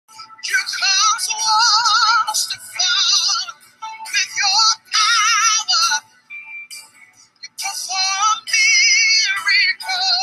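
Music with a high singing voice held in long notes with strong vibrato, in phrases broken by short pauses and a longer lull about six seconds in.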